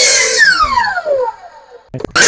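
Hitachi compound miter saw running at full speed, then switched off about half a second in, its motor whine falling steadily in pitch as the blade winds down and fades.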